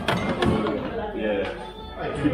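Indistinct talk of several people.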